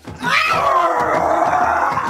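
A cheerleader's long, drawn-out cheering yell, held for nearly two seconds with a wavering pitch.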